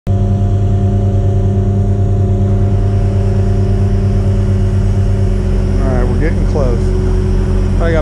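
Truck engine running steadily at a constant speed, driving the pump that pressurizes a vacuum trailer to push production water off through its hoses; its low hum changes slightly about five seconds in. A man starts talking over it near the end.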